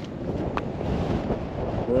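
Wind buffeting the camera microphone, a steady low rumble, with one sharp click about half a second in.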